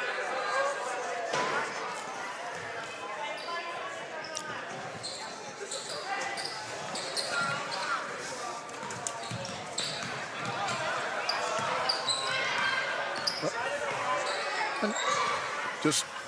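A basketball being dribbled on a hardwood gym floor under constant crowd chatter, with short high sneaker squeaks coming often from a few seconds in, as the game clock runs out.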